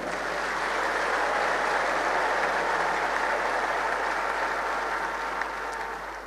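Audience applauding, holding steady and then dying away near the end.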